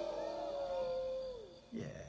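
A man's voice imitating a cat: one long, drawn-out meow that holds its pitch and then slides down at the end.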